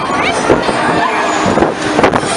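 Loud rushing noise from riding a fast-spinning fairground ride, with voices over it.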